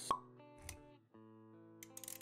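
Intro sound effects over music: a sharp pop just after the start, the loudest sound, then a duller low thump, then held musical notes with a few quick clicks near the end.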